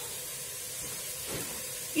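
Lamb and chopped onion frying in olive oil in a pot, giving a steady, quiet sizzle.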